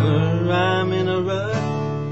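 Acoustic guitar strummed, with a man's voice holding a long wordless sung note that bends upward a little past the middle; the guitar is strummed again near the end.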